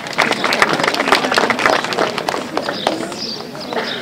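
Audience applauding: many hands clapping irregularly and densely, easing off slightly near the end.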